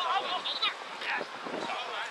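Shouts and calls from several voices across an open rugby pitch during play, some high and strained, coming in short bursts.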